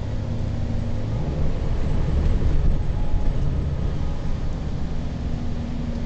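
Interior noise of a moving bus: steady low engine rumble and road noise. The engine note shifts about a second in and again near the end.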